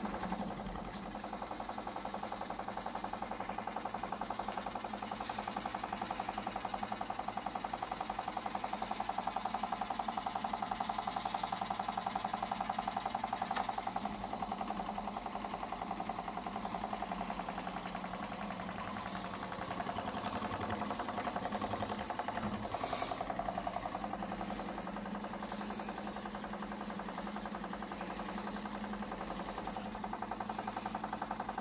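Whole-body vibration plate exercise machine running, with a steady rapid buzzing rattle while a macaque sits on its platform.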